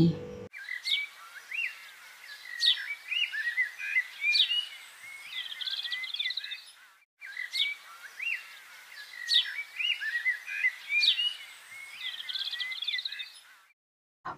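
Birds chirping and twittering: short calls and quick up-and-down whistles. The birdsong breaks off briefly about seven seconds in and then starts again in the same pattern.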